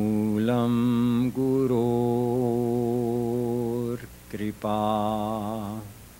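A solo male voice chants Sanskrit verses in praise of the guru, drawing out long held notes with a wavering pitch. The chant breaks off about four seconds in, resumes briefly, and stops just before the end.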